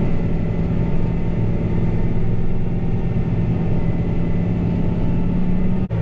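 John Deere 8530 tractor's diesel engine running steadily at maximum load while pulling an 11-shank V-ripper subsoiler as deep as it will go.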